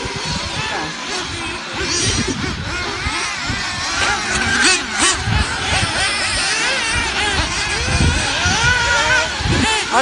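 Several 1/8-scale off-road RC buggies racing round a dirt track, their motors whining and rising and falling in pitch as they accelerate and brake, several at once.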